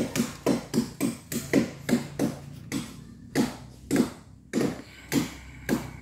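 Rapid, regular chopping blows on wood, about three strikes a second with a brief pause near the middle, from a blade cutting up felled trees and branches.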